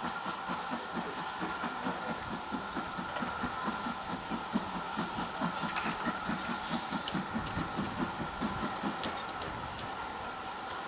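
Steam locomotive hauling a train of coaches under power, its exhaust beating steadily at about four beats a second over a constant hiss.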